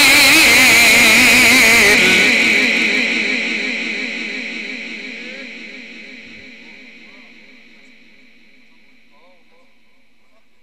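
A male Quran reciter's voice through a loudspeaker system holds the end of an ornamented, wavering note until about two seconds in. A long echo from the sound system then repeats the phrase and fades away over several seconds.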